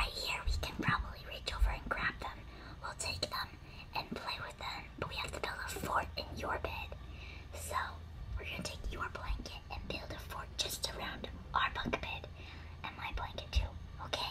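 A teenage girl whispering steadily throughout, telling a secret plan in a hushed voice.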